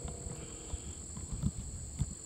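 Steady high-pitched buzz of insects in a grassy field, with a few soft low thumps about halfway through.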